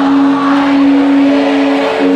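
Loud live rock band playing through a concert PA: amplified distorted guitar and bass holding one steady, sustained note, with no singing.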